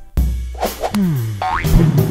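Comic cartoon-style transition sound effect over background music: a deep low hit, then a pitched glide that falls and then rises sharply like a boing, ending in another hit.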